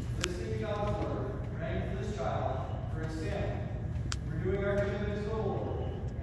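A man speaking in a large reverberant church, with two sharp clicks, one just after the start and one about four seconds in.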